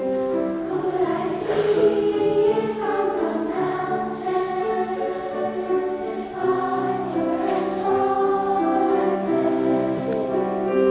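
Elementary-school children's choir singing a slow melody in held notes, one note running into the next without a break.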